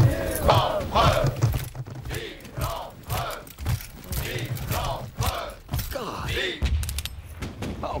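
Many soldiers' voices shouting together in repeated rising-and-falling cries over low, regular thumps, from an advancing infantry column.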